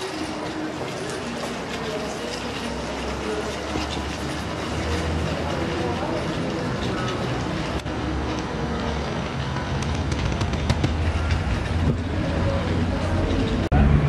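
Outdoor street ambience: a steady low rumble throughout, with faint, indistinct voices in the background.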